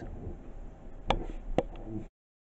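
Two sharp clicks about half a second apart, a little after a second in, over a low rumble of handling noise.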